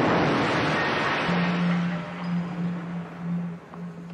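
Roar of a bomb explosion in a city street, a loud wash of noise from a sudden blast that slowly dies away. A low held music note comes in about a second in.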